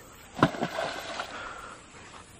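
A scarecrow splashing into a pond about half a second in, followed by a second or so of fading water noise.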